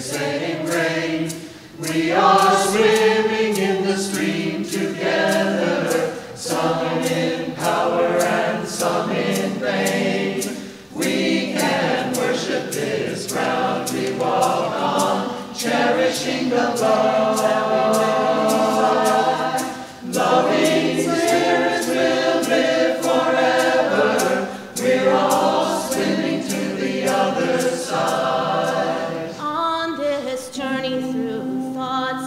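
Mixed choir of men and women singing, in phrases broken by short pauses for breath.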